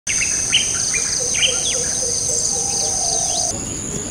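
Outdoor countryside ambience: birds chirping and calling in short, quick notes over a steady high-pitched insect drone. The drone shifts in pitch about three and a half seconds in.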